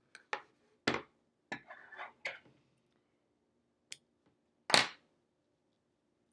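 Hand-embroidery handling sounds: a needle and cotton floss drawn through muslin stretched in a wooden hoop, heard as a scattering of short scratchy clicks and rustles, the longest and loudest near the end.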